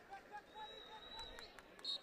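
Faint football-stadium background with scattered distant shouts and a thin, high whistle held for about a second, then a short second toot near the end.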